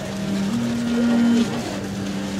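Live Mongolian folk music from acoustic guitar and a two-string Mongolian lute over a steady low drone. A long held note comes in about half a second in, is the loudest part, and stops suddenly about a second and a half in.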